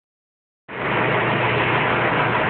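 Steady engine noise, like a vehicle idling, that starts abruptly about two-thirds of a second in and keeps an even low hum.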